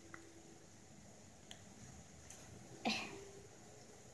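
A single short cough about three seconds in, over faint background noise.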